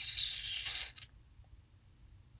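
A short, breathy exhale blown out through pursed lips, a hiss lasting just under a second that starts suddenly.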